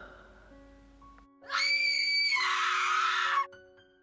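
A loud, high-pitched scream, starting about a second and a half in and held for about two seconds, with a change of pitch midway. Soft piano music starts just before it and runs under it.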